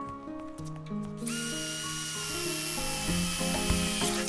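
Cordless electric screwdriver running with a steady high whine, starting about a second in and lasting about three seconds, with background music underneath.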